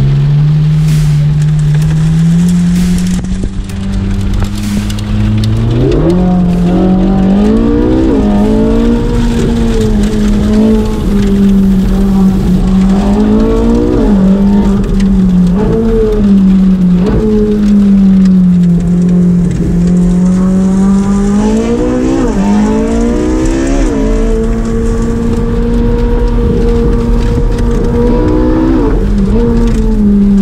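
Ferrari 458 Speciale's V8 heard from inside the cabin, driven hard. The revs climb slowly from low at first, then rise and fall again and again as the car accelerates through the gears and slows for bends.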